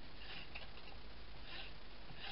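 Faint soft rustles of a paper banner being slid and pressed onto a cardstock card base by hand, twice briefly over a low steady hiss.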